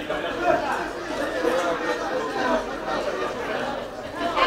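Chatter of several voices talking over one another, a steady murmur of spectators' conversation with no single voice standing out.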